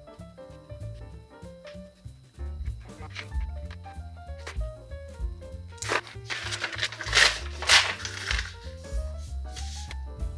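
Background music with a paper page being ripped out of a spiral notebook in several loud tears, about six seconds in.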